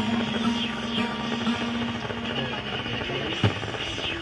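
Acoustic guitar accompaniment playing on between sung verses, with a held low tone through the first half. A single sharp knock sounds near the end.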